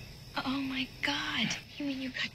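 Only speech: a woman speaking quietly in film dialogue.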